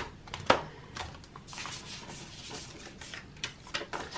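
Polymer £20 banknotes rustling and crinkling as they are pulled from a plastic binder pocket and handled, with a sharp click about half a second in and a few smaller clicks.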